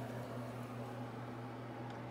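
Water boiling in a small saucepan on an electric coil stove: a steady hiss with a low, steady hum underneath.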